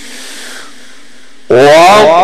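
Male Quran reciter's melodic recitation (tajwid chant) through a microphone and PA. A held note dies away into a low hiss, then about one and a half seconds in the voice comes back in loudly on a new phrase with gliding, ornamented pitch.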